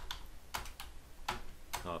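Typing on a computer keyboard: about half a dozen separate key clicks at an uneven pace.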